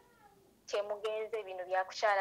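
A woman's high-pitched voice speaking through a mobile phone's speaker held up to a microphone, starting a little under a second in.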